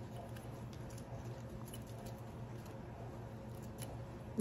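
Faint scratching and a few light ticks as a cardboard matchbox striker strip is handled and pushed into a metal mason jar lid, over a steady low hum.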